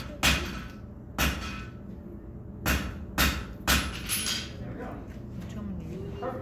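Blacksmith's hammer striking red-hot iron on an anvil during a borax-fluxed forge weld: two sharp blows, a pause, then three more in quick succession, each with a short ring.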